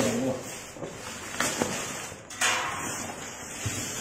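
Woven plastic sack rustling and scraping as a parcel is handled and a cardboard box is pulled out of it, with a couple of sharper rustles about one and a half and two and a half seconds in.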